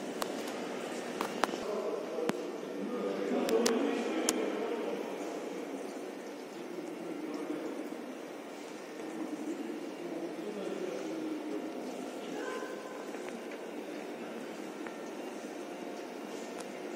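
Faint, muffled voices and general room noise in a large empty warehouse hall, with a few sharp clicks in the first four seconds.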